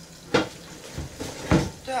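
Metal cookware clanking as a frying pan is pulled out from among other pans: a few sharp knocks, the clearest a third of a second in and another about a second and a half in.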